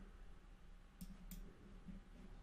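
Two quick, faint clicks about a third of a second apart from a computer mouse, over quiet room tone.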